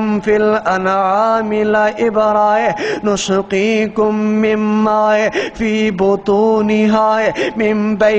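A man's voice reciting in a melodic chant over a microphone, with long drawn-out, wavering notes and brief pauses for breath: the sung recitation of a Quranic verse in Arabic.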